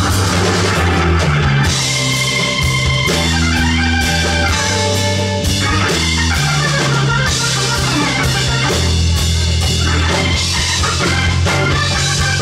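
Live blues-rock band playing loudly with drums, bass, electric guitar and a console organ.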